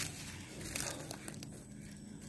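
Faint scattered crackling and rustling with small clicks, over a faint low hum.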